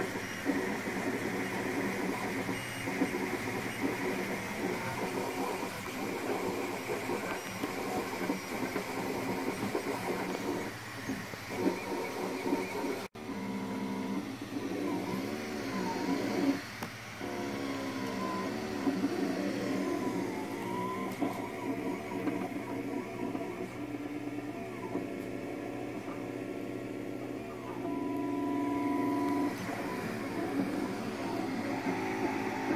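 Monoprice Select Plus 3D printer printing: its stepper motors whine in shifting tones that glide up and down in pitch as the print head moves, over the steady whir of the cooling fan. The sound breaks off for a moment about 13 seconds in.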